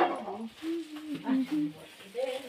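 A person's voice making a few short, level-pitched sounds in a row, without clear words.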